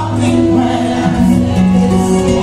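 A woman singing a gospel song to her own acoustic guitar, holding long notes.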